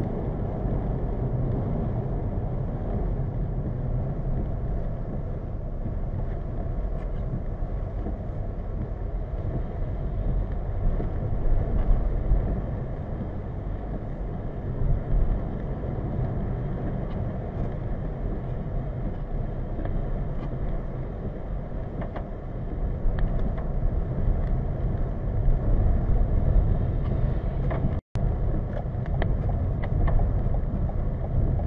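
Steady road and engine noise inside a moving 2020 Toyota Corolla, recorded by the dashcam's built-in microphone, with tyres running on wet, slushy pavement. The sound cuts out for an instant near the end.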